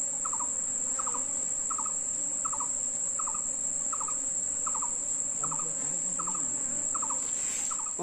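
Steady high-pitched insect drone with a short triple chirp repeating about every three-quarters of a second.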